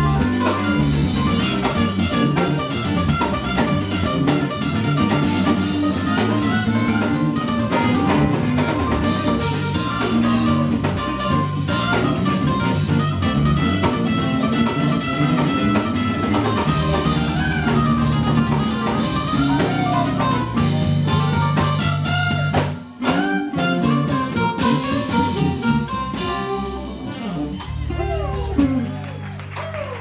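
Live band playing an R&B jazz groove: drum kit, electric bass, keyboard and saxophone together. The playing breaks off briefly about three-quarters of the way through, then resumes.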